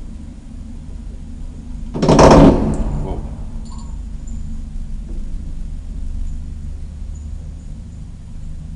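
Vintage gateless JÄRNH elevator car travelling down its shaft with a steady low rumble and hum. About two seconds in comes one loud, short burst of noise that dies away within a second.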